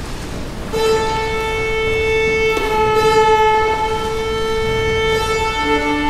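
An orchestra tuning: one instrument holds a long, steady tuning A for about five seconds, and a lower string note joins near the end.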